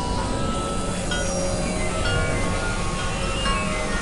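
Experimental electronic noise music: a dense, steady wash of synthesizer noise with short, scattered tones at shifting pitches sounding through it.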